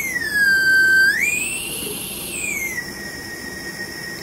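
Chupa Chups Melody Pop lollipop whistle blown in one long breath: a clear whistle tone that dips low, slides back up to a higher note, then settles on a steady middle pitch.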